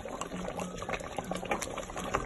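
Thick meat and onion sauce boiling in a pot as it reduces, bubbling with many small irregular pops.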